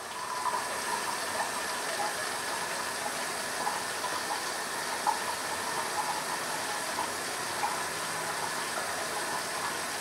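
Steady hiss of a bathroom tap left running, with a few faint short scratches as a double-edge safety razor is drawn over stubble.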